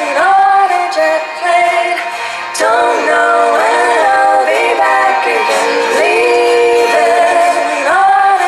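A woman singing live with long held notes in layered vocal harmony, several voices moving together, with no drums or bass.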